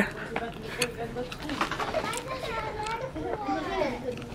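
Faint background voices, children's among them, much quieter than a close speaker.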